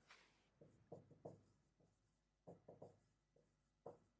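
Faint marker strokes on a whiteboard: a few short scrapes come in small groups about a second in, again about two and a half seconds in, and once more near the end.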